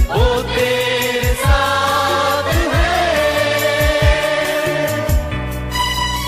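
Hindi Christian worship song: sung vocals holding long notes over a backing track with deep, regularly spaced drum beats. About five seconds in, the higher parts of the backing drop away.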